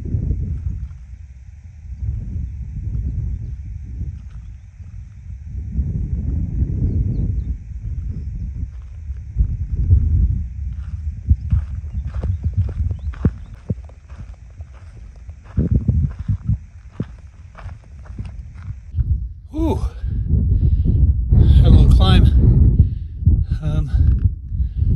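Wind buffeting the phone's microphone in gusts while a hiker walks a dry dirt trail, footsteps crunching in a quick run of sharp steps from about ten seconds in. A faint steady high buzz sits underneath until near the end, when a man's voice is briefly heard.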